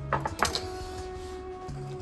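Background music with held notes, and two short knocks in the first half second from kitchen utensils on a wooden cutting board.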